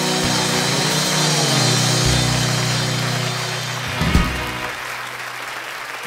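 Live country band letting the song's final chord ring out, slowly fading, with a low final hit about four seconds in, as the audience applauds.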